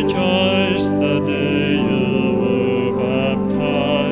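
A hymn sung with church organ accompaniment: sustained organ chords under voices holding long notes with vibrato.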